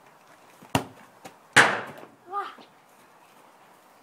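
A football is kicked with a sharp thud, then under a second later a louder bang with a short ringing decay as the ball strikes something hard.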